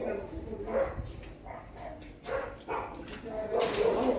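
A dog barking among indistinct men's voices, with one sharp, louder burst near the end.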